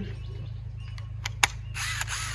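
Cordless quarter-inch impact driver being handled, a few sharp clicks, then its motor spun briefly with no load: a short, high whir near the end.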